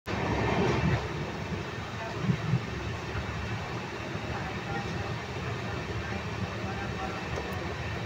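A train running along the track, heard from inside the passenger coach through an open barred window: a steady rumble, louder in the first second, with two brief thuds a little after two seconds.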